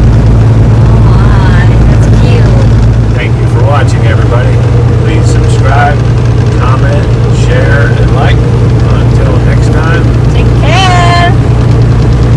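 Truck cab interior while driving on the highway: a loud, steady low engine and road drone that eases slightly about three seconds in.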